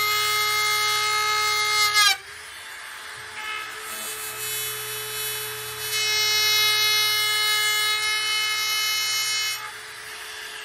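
Trim router with a flush-trim bit cutting along the edge of a wooden panel: a high-pitched motor whine that dips and drops away about two seconds in, stays quieter for a few seconds, then comes back about six seconds in and drops again just before the end.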